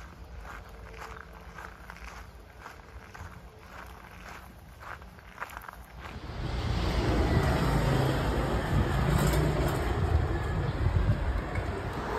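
Quiet outdoor ambience with faint, evenly paced footsteps. About six seconds in, a louder steady noise of road traffic takes over, a vehicle passing on a town street.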